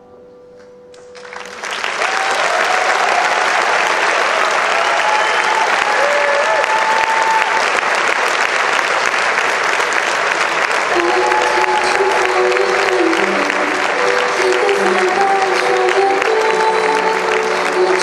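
Audience applause breaks out about a second in after a brief hush and carries on steadily. Music comes in under the clapping about eleven seconds in.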